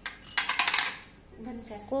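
A packed ball of crushed ice scraping against the inside of a drinking glass as it is pulled out on its stick: one short rattling scrape of about half a second. A voice starts near the end.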